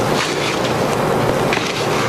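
A steady background hiss, with a few faint scrapes from a plastic measuring cup scooping powdered red potter's clay off a plate and tipping it into a plastic bowl.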